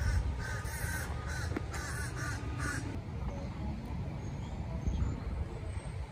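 A crow cawing in a quick series of harsh calls for about the first three seconds, over a steady low rumble.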